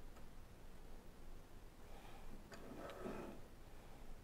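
Faint clicks and light rustling of small hand work: the stainless steel braided shield of a pickup hookup wire being cut back, with a few soft ticks a little past halfway.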